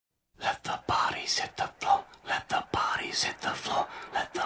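Puppies play-wrestling: a quick run of short, breathy huffing noises, several a second, with a few sharp knocks among them.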